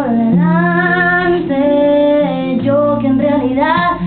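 A woman singing live with acoustic guitar accompaniment: long held sung notes, with the voice rising in pitch near the end of the phrase, over sustained guitar notes.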